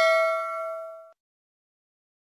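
A notification-bell chime sound effect ringing out: one struck bell-like tone with several pitches together, fading and then cutting off abruptly about a second in.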